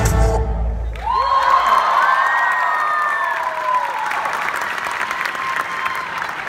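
Loud dance music with heavy bass ends abruptly about a second in, and an audience responds with long high gliding cheers, then a steady patter of applause.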